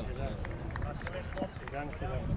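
Distant shouts and calls of footballers on the pitch, short bursts of voices over a steady low rumble, with a few faint knocks.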